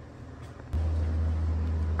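A click, then a steady low hum cuts in abruptly about three-quarters of a second in and keeps running evenly.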